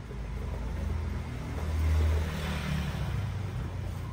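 A motor vehicle passing by: a low engine rumble that builds to a peak about two seconds in, then fades.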